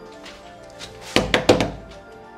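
Three quick knocks on a door, close together about a second in, over steady background music.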